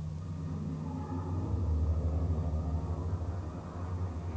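Low rumble of a car's engine and road noise heard from inside the moving vehicle, growing louder about a second and a half in.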